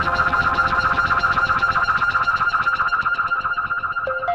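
Chill-out electronic music: a held synthesizer chord pulsing rapidly and evenly, with little bass under it.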